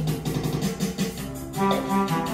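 Music for the Korean 'blues' social dance playing: held melody notes over a steady beat.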